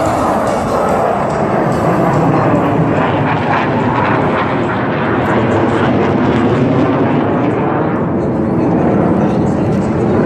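Jet aircraft flying overhead in formation, their engines giving a loud, steady roar throughout.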